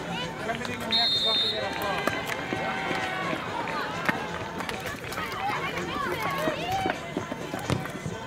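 A referee's whistle blows once, short and high, about a second in, starting play. Then children's voices call out across the football pitch, with a sharp kick of the ball about four seconds in.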